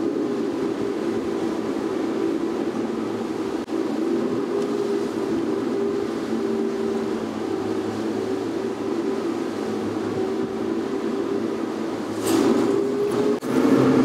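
Twin outboard engines running steadily at high trolling speed, a constant hum with a few held tones over the rush of the wake. It grows louder and rougher about twelve seconds in.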